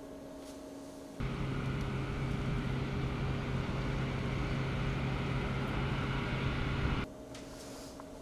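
Jet engines of the Lockheed L-1011 TriStar carrier aircraft running steadily: a loud, even rush with a low hum. It cuts in abruptly about a second in and cuts off abruptly about a second before the end, with a faint room hum before and after.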